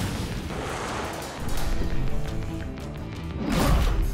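Cartoon explosion sound effects over a music score: a blast rumbles and dies away, another swell comes about a second and a half in, and a stronger low boom near the end.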